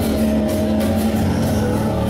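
A live rock band playing loud, with electric guitar, bass and drums; a guitar holds a steady, distorted note through most of the moment.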